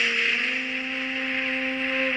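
Recorded film song music holding one long sustained note without singing, steady in pitch and level.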